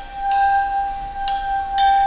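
Free-jazz quartet of saxophone, violin, piano and drums playing quietly: one steady high note is held the whole way, while three struck, ringing tones sound over it.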